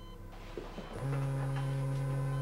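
Mobile phone vibrating for an incoming call: a steady low buzz that starts about a second in, one pulse in a repeating on-off pattern.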